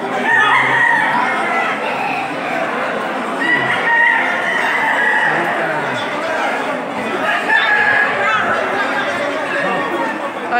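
Gamecocks crowing several times over the steady din of a large crowd of men talking.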